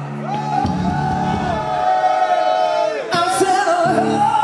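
Unaccompanied long held sung notes with wavering pitch, a rock singer's vocal ad-lib with crowd voices joining in, in a large hall; the low held note under it fades out early and the singing breaks off briefly about three seconds in.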